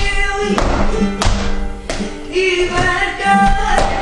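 Flamenco music for tientos with a singing voice. Three sharp taps come about two-thirds of a second apart in the first two seconds, with weaker ones later.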